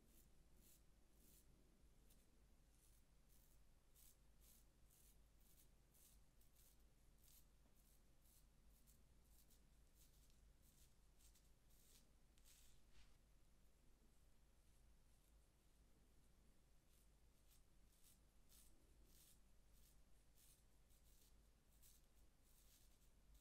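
Faint, short scraping strokes of a Bevel disposable safety razor cutting long hair through shaving lather on a scalp, about one or two strokes a second, with a pause of a couple of seconds about two-thirds through.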